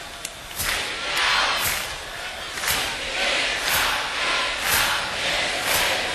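Large festival crowd shouting and singing back in call-and-response, many voices rising and falling in repeated swells while the band has stopped playing.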